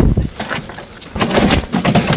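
A sharp knock, then scuffling and scraping from about a second in, as a struggling badger on a catch pole is pushed into a plastic pet carrier on tarmac.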